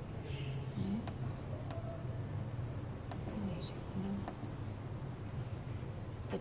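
About four short, high beeps from a clinical chemistry analyzer's keypad as its down-arrow key is pressed to scroll through a menu, over a steady low hum.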